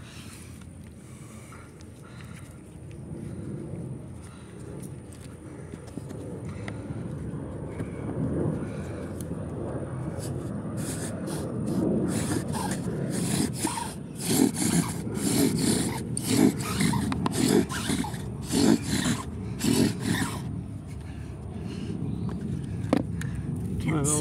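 A wooden spindle grinding and squeaking in a fireboard's hearth notch as a spring-pole string drill spins it back and forth. The strokes build in loudness about a third of the way in, come in a steady rhythm of about one and a half a second, and ease off near the end as the drill stops.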